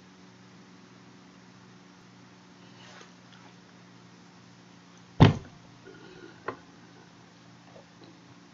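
Steady low hum with one loud thump about five seconds in, followed a little over a second later by a smaller, sharper click.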